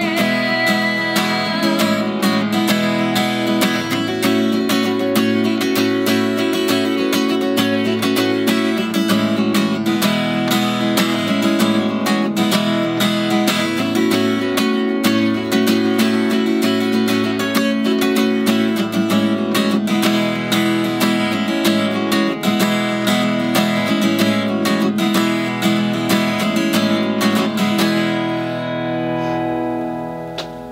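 Acoustic guitar strummed steadily in an instrumental passage, the end of a song. The final chord rings out and fades near the end.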